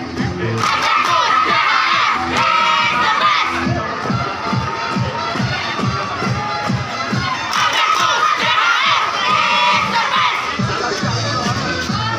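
Crowd of young people shouting and cheering in two loud surges of about three seconds each, over music with a steady beat.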